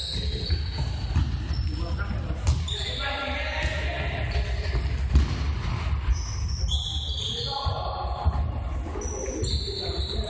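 Indoor futsal play echoing in a sports hall. The ball is kicked and bounces on the court with sharp thuds, the loudest about halfway through, and short high squeaks, likely sneakers on the floor, come near the end, over players' shouts and a steady low rumble.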